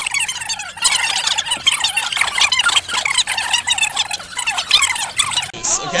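A boy laughing hard and without a break: high-pitched, breathless laughter with quick gasps, part of a challenge to laugh non-stop.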